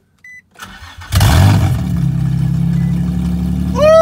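Infiniti G35's freshly swapped-in VQ V6 starting for the first time: a short electronic beep, a brief crank on the starter, then the engine catches about a second in with a flare of revs and settles to a steady idle, heard from inside the cabin. A steady high tone rises in near the end.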